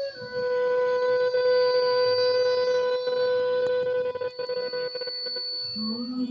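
Flute holding one long, steady note over the ensemble's drone. Voices come in just before the end.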